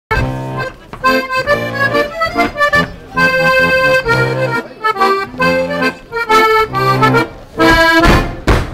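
Two piano accordions playing a traditional folk tune together: chords over a steady, repeating bass line.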